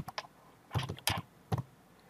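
Typing on a computer keyboard: about five separate keystrokes, spaced unevenly over a second and a half.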